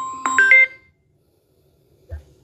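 Electronic phone chime: a few short ringing notes in the first second, the last two stepping higher in pitch.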